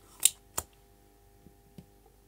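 A spring-loaded solder sucker (desoldering pump) being handled and primed: one sharp click about a quarter second in, a softer click just after, then a couple of light ticks. A faint steady hum sits underneath.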